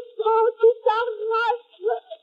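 A woman's voice declaiming French verse in a high, chanted, almost sung delivery, with short breaks between phrases, stopping shortly before the end. The sound is thin and narrow, as on an early acoustic recording.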